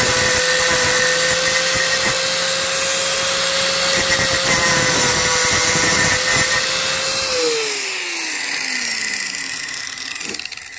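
Angle grinder running steadily as its disc grinds down the mushroomed steel end of a seized lawn tractor transaxle axle. About seven seconds in it is switched off, and its whine falls in pitch as the disc winds down.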